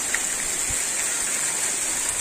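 Heavy rain falling steadily on trees and the ground, a dense, even hiss.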